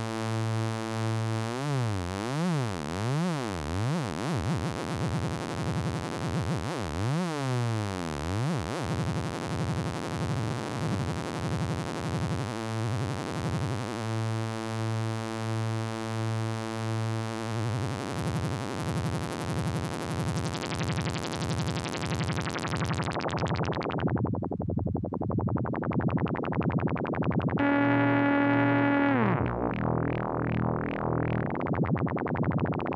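Native Instruments Monark software synthesizer (modelled on the Minimoog) holding a sustained bass note whose tone sweeps and wavers, with oscillator 3 used as a low-frequency oscillator modulating the sound. Past the middle the filter closes and the tone darkens, and near the end a brighter note glides down in pitch.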